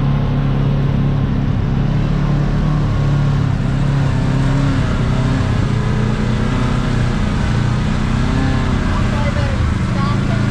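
Kawasaki KRX side-by-side's engine running steadily at low revs, with a constant low hum and a slight waver in pitch.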